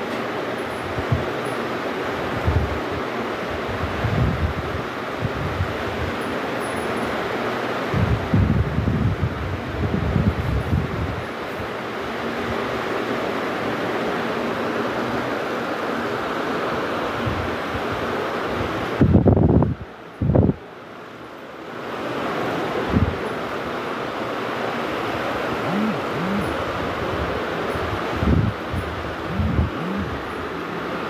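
Wind on the camera microphone: a steady rushing hiss with irregular low buffeting thumps, strongest about two-thirds of the way through.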